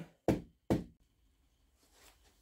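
Grip end of a putter fitted with a new SuperStroke grip tapped twice on the floor, two short knocks about half a second apart, to seat the solvent-wet grip fully onto the shaft.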